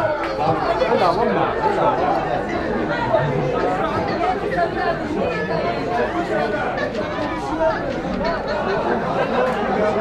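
Chatter of a small crowd of football spectators: many voices talking over one another at a steady level, with no one voice standing out.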